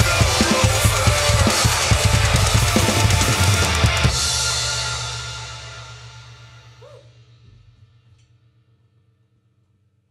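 Acoustic drum kit played hard along to a heavy music track: fast kick, snare and cymbal hits. About four seconds in the playing stops on a final hit, and the last chord and cymbals ring out and fade to near silence over about five seconds.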